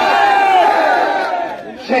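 Rally crowd shouting a slogan in unison: one long drawn-out shout of many voices that falls slightly and dies away about a second and a half in.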